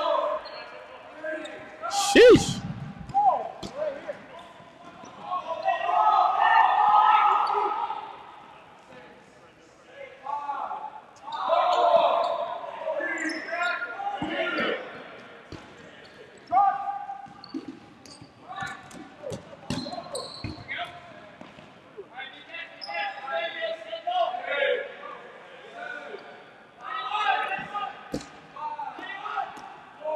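Dodgeballs thrown and bouncing off a hardwood gym floor and walls, with players' voices calling out in a large echoing gym. The loudest hit is a sharp smack about two seconds in, with scattered bounces after it.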